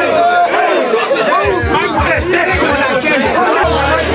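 A group of young men shouting and chanting over one another in a locker room, over music with deep bass thuds; a held bass note comes in near the end.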